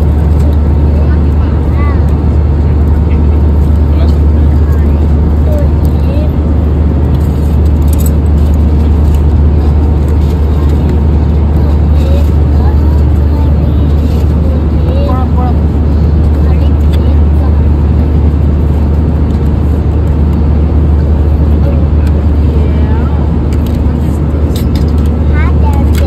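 Loud, steady low drone of an airliner cabin in flight: engine and airflow noise that holds unchanged throughout, with faint voices in the background.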